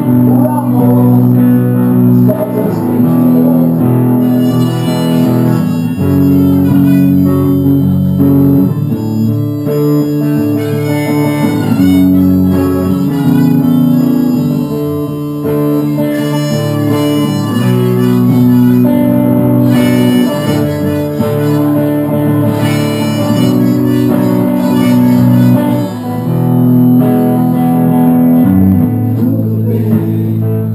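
Live instrumental passage on an amplified electric guitar, with held notes and chords changing every second or two and no singing.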